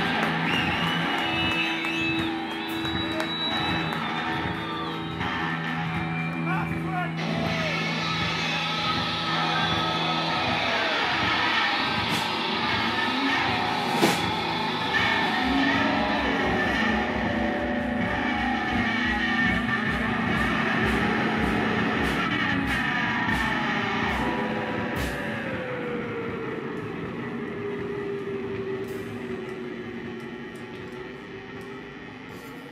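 Small rock band playing live: drum kit keeping a steady beat under held electric guitar tones worked through effects pedals. Near the end the music thins and fades, leaving a held tone that slowly falls in pitch.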